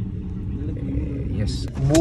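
Taxi heard from inside the cabin, moving slowly or idling: a steady low rumble. Near the end come a couple of sharp clicks as the door is unlatched and opened.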